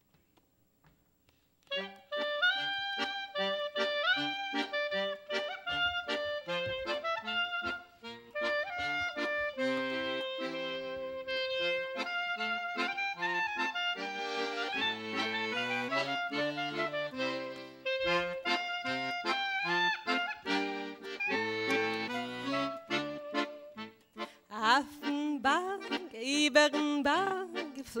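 Clarinet and accordion playing the instrumental introduction to a Yiddish folk song. The music begins about two seconds in, with brief breaks in the phrasing near the 8- and 24-second marks.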